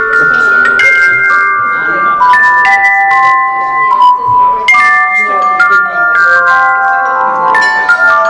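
A group ringing hand chimes together in a slow tune: clear, sustained bell-like tones that overlap and ring on, a new note sounding about every half second in phrases that step downward.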